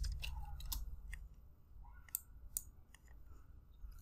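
Computer mouse buttons clicking several times, short sharp clicks spread unevenly, over a faint low hum.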